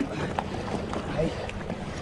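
Wind buffeting the microphone over small waves lapping and splashing against jetty rocks.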